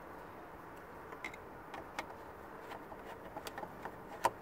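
Faint, scattered clicks and ticks of hand work on a plastic soft-top latch at the windshield header, a screwdriver being set to its Phillips screw, over a steady faint hiss.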